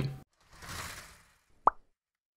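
Outro animation sound effects: a soft whoosh, then a single short pop near the end.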